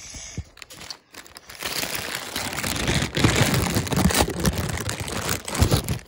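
Grey plastic poly mailer bag being torn and crinkled open by hand. It starts quietly with a few clicks, then from about two seconds in the rustling and tearing is loud and continuous.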